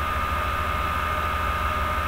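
Steady background hiss with a low hum and a thin, unchanging high whine: the room and recording noise of a webcam microphone in a pause between words.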